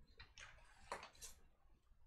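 Near silence: room tone with a few faint clicks or taps, the strongest about a second in.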